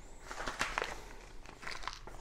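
Faint movement noise from someone walking with a handheld camera: a few light clicks and rustles, about half a second in and again near the end.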